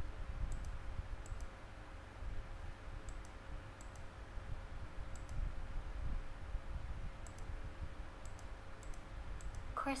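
Light clicks of a computer mouse and keyboard, scattered and mostly in quick pairs, as a word is typed letter by letter and corrected. A low, steady background rumble runs under them.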